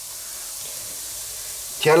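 Chicken pieces sizzling on the hot lower grate of a gas grill as they are seared, a steady even hiss.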